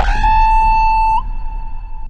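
Synthesized logo sting: a loud, steady electronic tone with overtones, which bends slightly upward and cuts off a little over a second in, leaving a fainter high tone that dies away. A deep low rumble runs underneath.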